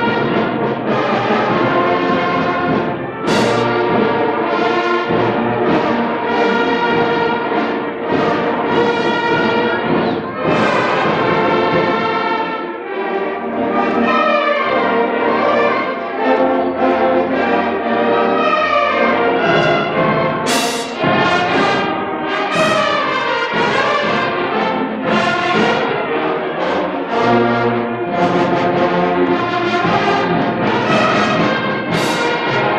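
A school band playing live, with the brass to the fore, a full and steady sound, and two sharp bright hits, one about three seconds in and one about two-thirds of the way through.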